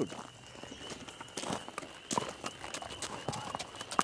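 A horse's hooves clopping on a paved driveway at a slow walk, a handful of irregular hoof strikes.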